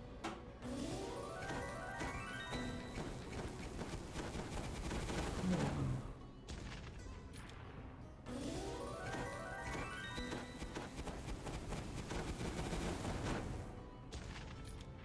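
Online video slot game sound effects during free spins: the reels spin twice, each spin opening with a rising stepped run of tones, over the game's music.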